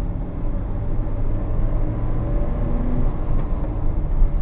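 A 1995 Mercedes-Benz C180 (W202) with its 1.8-litre M111 four-cylinder engine accelerating under heavy throttle, heard from inside the cabin as a steady engine drone mixed with road noise. The pull is slow: the engine is weak at low revs and only makes its power above about 5000 rpm.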